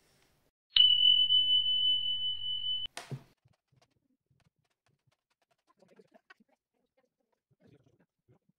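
A single steady, high-pitched electronic beep lasting about two seconds, starting about a second in and cutting off abruptly with a click.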